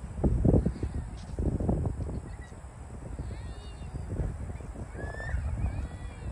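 Wind buffeting the microphone in uneven gusts, heaviest in the first two seconds, with a few faint bird calls in the middle and a short chirp near the end.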